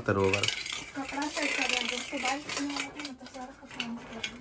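A person's voice making wordless, pitched sounds in short broken stretches, with a few light clicks and clinks.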